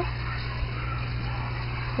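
Steady low mechanical hum with an even rushing noise over it, unchanging throughout.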